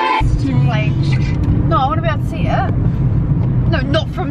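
Steady low rumble of a car's engine and road noise heard inside the cabin of a moving car, starting just after the opening moment, with a person's voice over it.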